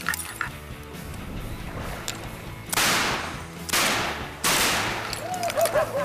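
Three shotgun shots, about a second apart, fired at incoming ducks, over steady background music.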